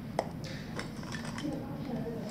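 Pens and a spiral notebook handled on a desk: a sharp click of a pen set down, then a few lighter clicks and a paper rustle as one pen is swapped for another.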